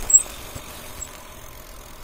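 Steady rolling and wind noise from riding a bicycle over asphalt, with a brief high-pitched chirp just after the start and a fainter one about a second in.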